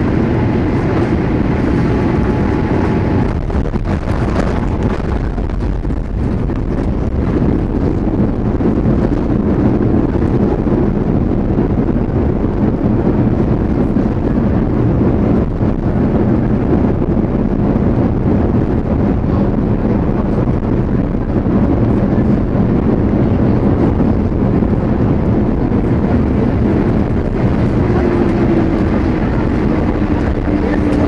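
Steady roar of a Boeing 787-8 airliner's engines and airflow heard from inside the passenger cabin as it comes in to land. A faint low tone slides down in pitch near the end.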